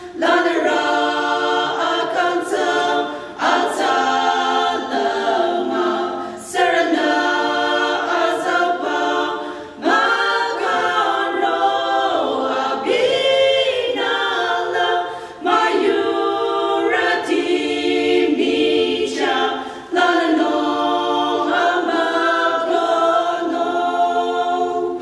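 Small women's vocal ensemble of six singing a hymn a cappella in harmony, in phrases that break for a breath every few seconds.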